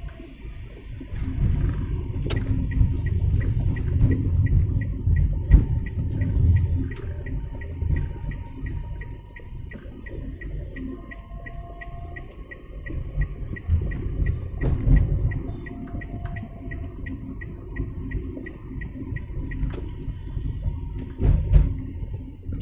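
Car cabin noise while driving: steady engine and road rumble with a few knocks. A turn-signal indicator ticks regularly from about two seconds in until near the end.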